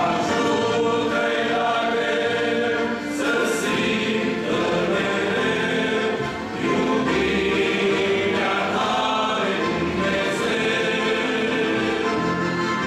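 A men's choir singing a hymn in long held phrases, with brief breaks about three and about six and a half seconds in.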